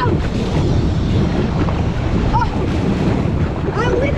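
Water rushing and splashing around a round inflatable raft as it slides down a water slide flume, with wind buffeting the camera microphone. A brief voice cuts in about two and a half seconds in.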